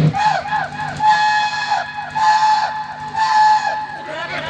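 A man imitating a train whistle with his voice, cupped hands and microphone: about four quick rising-and-falling hoots, then longer held toots with short breaks, amplified through the stage sound system.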